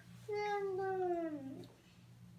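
A drowsy toddler lets out one drawn-out whimper, about a second long, that falls in pitch.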